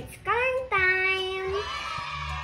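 Background music with a high sung vocal: the voice slides up into a note, then holds one long steady note, with the beat dropped out underneath.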